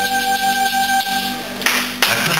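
A live band holding a sustained final chord, which stops about one and a half seconds in as the audience breaks into applause.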